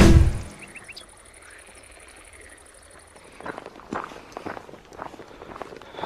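A music intro ends on a loud hit that dies away within about half a second. After a quiet stretch, footsteps on a dirt hiking trail begin about three and a half seconds in, an uneven run of soft steps.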